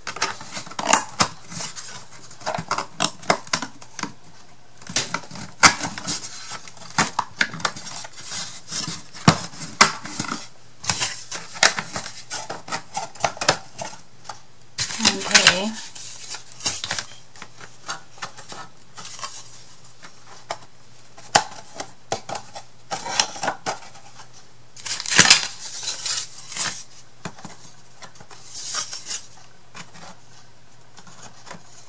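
Thin wooden craft-kit pieces clacking and knocking against each other and the table as they are handled and slotted together, in many irregular small clicks with a few louder clusters about halfway and near the end.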